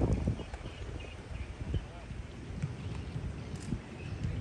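Open-air sound of a football training session: irregular low thuds and rumble with faint, distant voices of players.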